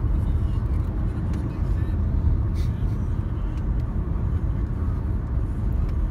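Steady low rumble of road and engine noise heard inside the cabin of a moving car.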